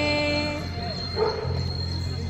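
A girl's singing voice holding one long steady note of a patriotic Hindi song that stops about half a second in, then a single short, loud bark-like sound about a second later.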